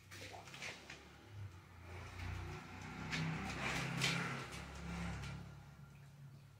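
A dog with mange licking and nibbling at its itchy skin: faint, irregular licking and rustling sounds, loudest in the middle.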